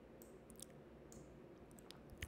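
Near silence: faint room tone with a few scattered soft clicks.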